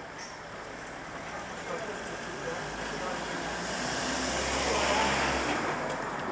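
A road vehicle passing close by, its engine rumble and tyre noise swelling to a peak about five seconds in, then falling away.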